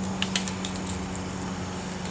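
Small dry crackles and clicks of onion skin as the tough outer layer is peeled off the onion by hand, over a steady low hum.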